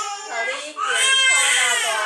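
A four-month-old baby boy crying: a short break for breath, then one long, loud wail from about a second in.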